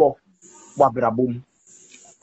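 Speech only: a brief spoken phrase about a second in, set between pauses that hold only a faint hiss.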